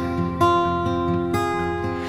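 Instrumental gap in a slow psychedelic folk song: acoustic guitar chords ringing on, with a new chord struck about half a second in and another just past the middle.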